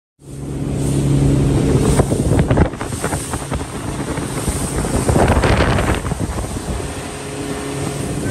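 Motorboat outboard engines running at speed with a steady hum, cutting in suddenly just after the start, under wind buffeting the microphone in gusts and water rushing past the hull.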